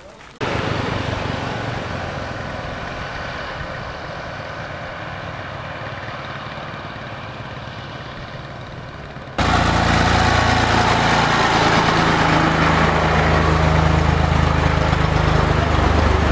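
Farm tractor diesel engines running, heard in two cut-together clips: the first slowly fades, and the second, starting suddenly about nine seconds in, is louder with a steady low engine hum, as of a tractor idling close by.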